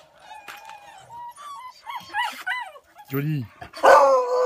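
Beagles whining and yipping in high, bending cries, then breaking into a loud bay near the end.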